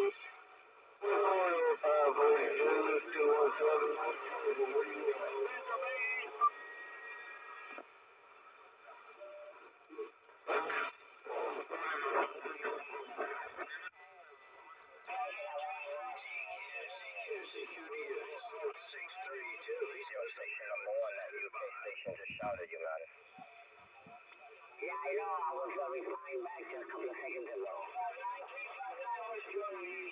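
Distant stations' voices coming through a CB transceiver's speaker, tinny and narrow-band, tuned to 27.385 MHz lower sideband. The band is crowded, with stations on top of each other and really hard to understand.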